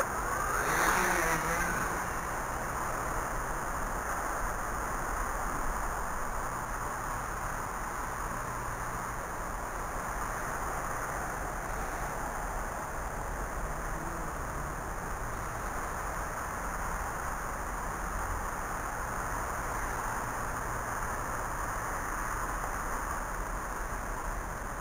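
RC Logger RC EYE One Xtreme quadcopter's electric motors and propellers running in flight, heard through its onboard camera as a steady buzz with a high whine. The sound is briefly louder in the first second or two, as it lifts off.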